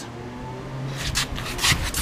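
Steady low hum with several short rubbing and scraping noises in the second half, like handling or brushing against the bike's parts.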